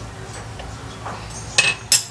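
Two short metallic clinks about a third of a second apart near the end, as a handheld metal meat-tenderizer mallet is set down.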